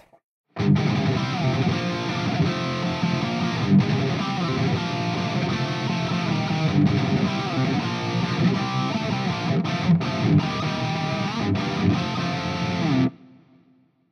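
Distorted electric guitar, tuned to drop C, playing a heavy metal riff through an amp. It starts about half a second in and stops about a second before the end, leaving a short ringing fade.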